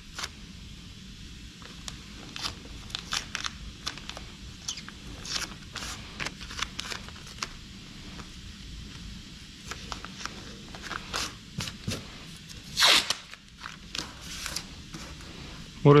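Paper masking tape pulled off the roll in short rasping strips, torn and smoothed down by hand along a car's fender and headlight edge, with one longer, louder rip near the end.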